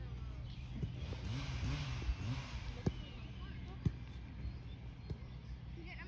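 Distant voices on a football pitch with several sharp thuds of a football being kicked, the sharpest about four seconds in.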